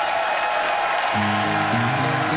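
Studio audience applauding as a band starts to play, with steady held notes of the song's intro coming in about a second in under the clapping.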